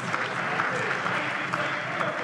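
Members of a parliament's plenary chamber applauding, a steady spread of clapping.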